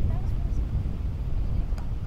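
Wind buffeting the camera microphone, a steady low rumble, with faint far-off voices and one sharp tap near the end.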